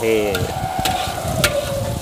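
Metal spatula stirring and scraping a garlic-and-ginger spice paste frying in hot oil in an aluminium wok, over a steady sizzle, with a couple of sharp clinks of the spatula against the pan.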